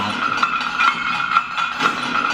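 Movie trailer soundtrack under the cast credits: a sustained high tone with a regular clinking pulse about twice a second.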